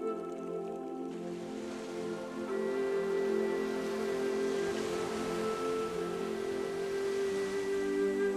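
Slow new-age background music of sustained, held chords, shifting to a new chord about two and a half seconds in. Under it, the wash of an ocean wave swells up through the middle and fades away near the end.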